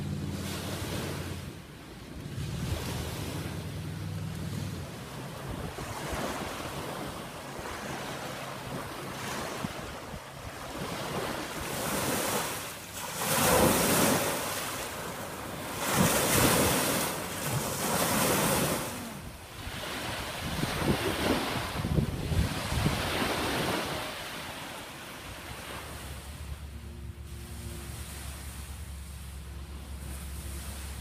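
Small wind-driven lake waves washing onto a sand and pebble shore in repeated surges a couple of seconds apart, loudest in the middle stretch, with wind buffeting the microphone.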